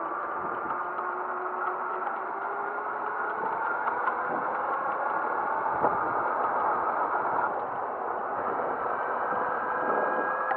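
Small motor scooter running as it is ridden along a street: a steady motor note whose pitch drifts slowly, over road noise and rattling, with one sharp knock about six seconds in.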